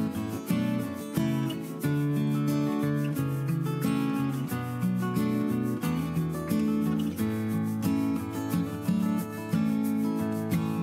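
Background music of acoustic guitar playing a steady run of plucked notes.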